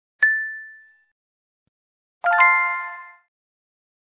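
Two sound-effect chimes. The first is a single high ding just after the start. The second, just past two seconds in, is a richer, lower chime with several tones. Each rings out and fades within about a second.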